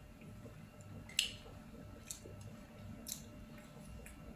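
A soft bread bun being torn apart by hand, giving three short, faint crackles about a second apart, the first the loudest.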